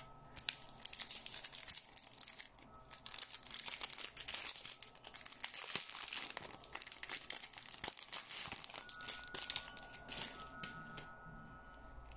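Thin clear plastic packaging bag crinkling and rustling on and off as fingers pull it open.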